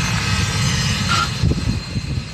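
Jet airliner engines running, a steady rushing noise with a faint high whine, over heavy, uneven low rumbling from wind buffeting the microphone.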